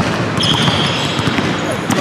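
Basketball being dribbled on a hardwood gym floor, bouncing repeatedly. From about half a second in, a high steady squeal runs almost to the end.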